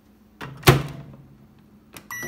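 Microwave oven door swung shut: a small click, then a loud latching thud with a short ring. A faint click of a keypad button being pressed comes near the end.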